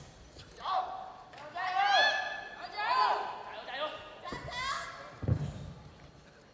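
Several short, high-pitched shouts in a large hall, one after another, then a few dull thuds of a body landing on the carpeted competition mat near the end.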